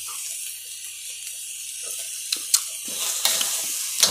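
Ranti (black nightshade) berries frying in a wok, a steady high sizzle, with a few light clicks of the spatula against the wok in the second half.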